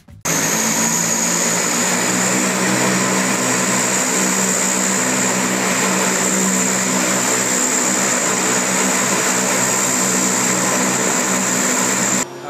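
The Super Guppy's Allison turboprop engines running steadily on the ground: a loud, constant drone with a high turbine whine above it, starting abruptly just after the start.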